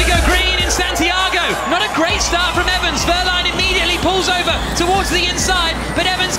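A field of Formula E cars' electric drivetrains whining all at once as they accelerate away from a standing race start. Many high whines overlap, each rising and falling in pitch, heard through the TV broadcast sound.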